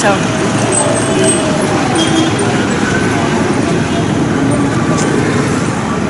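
Steady street traffic noise from motorbikes and vehicles going by, with the voices of people around mixed in.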